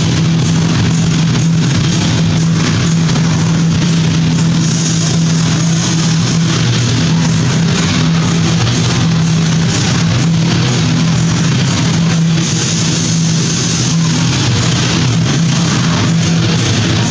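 Loud rock music with a steady low drone and a dense, even wash of sound.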